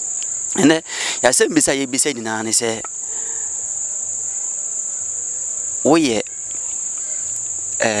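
Crickets chirring in a steady, continuous high-pitched trill. Men's voices talk over it for the first few seconds and again briefly about six seconds in.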